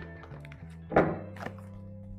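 A single thunk about a second in and a lighter knock half a second later, over quiet background music with long held notes.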